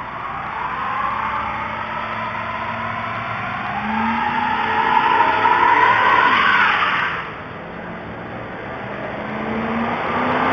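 Motor vehicle engine accelerating hard, its pitch and loudness climbing for about seven seconds before dropping off suddenly. A second vehicle's engine grows louder near the end as it approaches.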